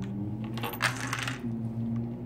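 A small round plastic Lego piece knocked as a puck across the studs of a Lego baseplate: a sharp tap, then a clattering rattle from about half a second in, lasting close to a second. A steady low hum runs underneath.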